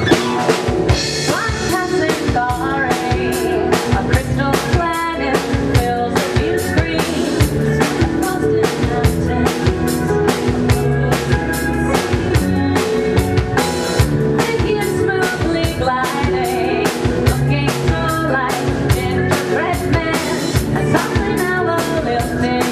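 Live band starting a song after a spoken count-in: a drum kit keeps a steady beat under harp, cello, guitar and keyboard.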